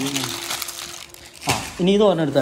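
A person's voice holding a drawn-out hum, then talking again about one and a half seconds in, with crinkling handling noise in between.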